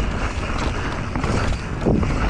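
Wind buffeting the microphone of a camera on a mountain bike descending a dry dirt downhill trail, with the tyres and bike rattling over the rough ground and a sharper knock near the end.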